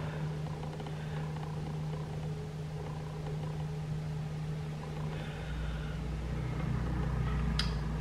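A steady low machine hum, joined by a deeper rumble about five and a half seconds in, with one faint click near the end.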